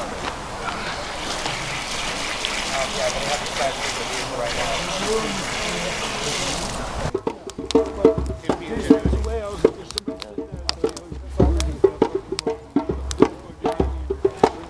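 A steady outdoor hiss with faint voices, then, from about halfway, a wood campfire crackling with many sharp pops over irregular low thumps.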